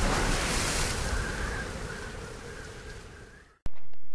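Rushing wash of ocean surf that fades away over about three seconds, then cuts off suddenly with a click near the end.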